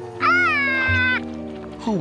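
A cartoon monkey's high cry of dismay, about a second long and rising at its start, over background music.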